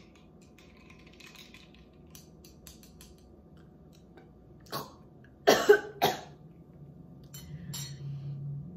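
Faint clinks of a metal straw stirring ice in a glass, then two loud coughs a little past halfway.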